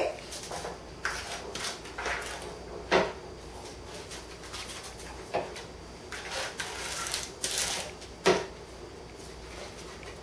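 Kitchen handling sounds while a plastic piping bag is filled: crinkly rustling of the bag and a few sharp knocks of utensils against a bowl or the counter. The loudest knock comes about eight seconds in.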